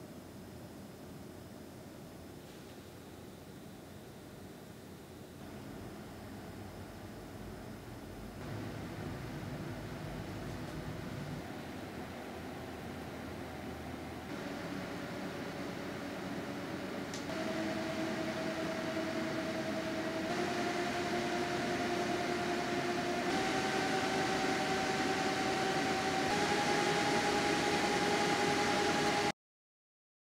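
Be Quiet! Silent Wings 4 Pro 120 mm PC fans running in a small case and stepped up through rising speeds from about 1220 RPM. A steady rush of air grows louder in steps, with a faint hum in the second half whose pitch rises at each step. The sound cuts off suddenly near the end.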